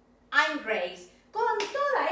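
A voice in two short phrases, the first about a third of a second in and the second from about one and a half seconds, with hand clapping.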